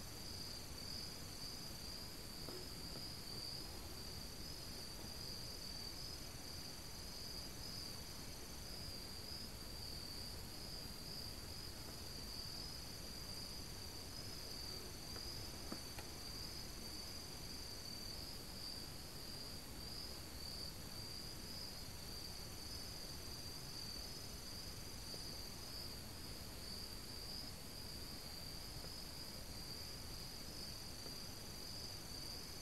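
An insect chorus of crickets trilling without a break in one high band, with fainter, higher-pitched trills starting and stopping above it. A single faint click about halfway through.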